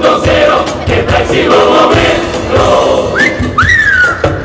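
A large carnival murga chorus singing together over a steady drum beat. Near the end come two whistle sounds that rise and then fall.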